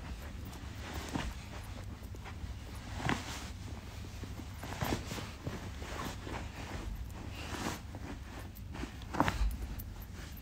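Scattered soft knocks and clicks, irregularly a second or two apart and loudest about nine seconds in, over a low steady hum.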